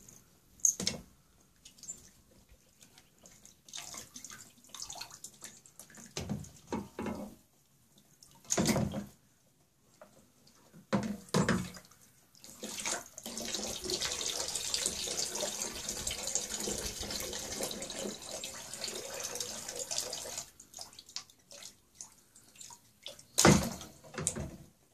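Water in a child's plastic water table splashing in short bursts as small hands paddle and lift toys, then a steady pour or trickle of water lasting several seconds in the middle, and a louder splash near the end.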